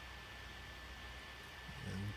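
Faint steady background hiss with a low hum and a thin, steady high whine; no distinct event. A man's voice begins right at the end.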